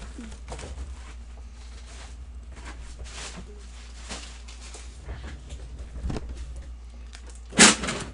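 Faint rustling and handling noises over a low steady hum, with one loud, sudden, short burst of noise shortly before the end.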